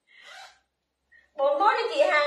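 A woman's voice: a short, faint breath at the start, a pause of about a second, then talking picks up again about 1.4 s in.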